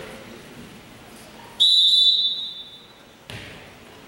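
Referee's whistle: one short, loud, steady high blast about one and a half seconds in, fading out in the gym's echo, the signal for the next serve. A single thud follows near the end.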